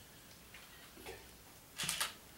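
A quiet room with a couple of soft clicks, then near the end a louder short clack: a camera shutter firing.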